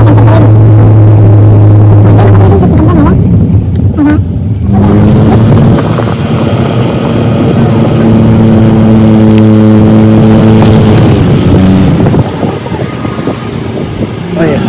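Car engine droning steadily, heard from inside the car while driving. The drone's pitch changes about four to five seconds in, and it grows quieter near the end.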